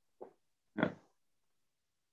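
A man's short, low vocal sound, then a single spoken "yeah".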